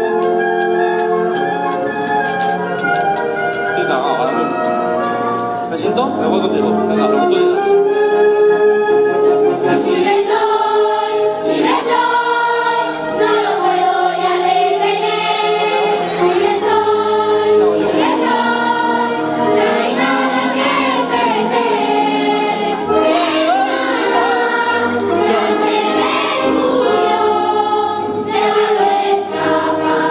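A large mixed choir of children and adults singing a musical-theatre number with a live band accompanying, held notes at first, then fuller and a little louder from about ten seconds in.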